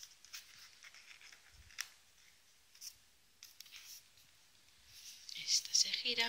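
Card and paper pages of a handmade scrapbook album being handled and turned: soft rustling and sliding with a few light taps, and a louder rustle near the end.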